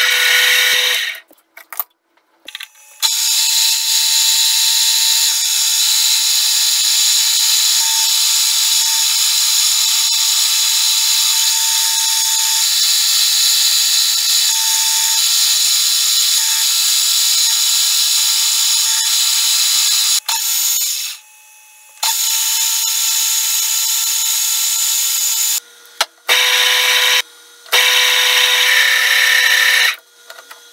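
Metal lathe spinning a workpiece while drilling and turning it: a loud, steady, high-pitched machine noise with a constant whine under it. It cuts off abruptly a few times.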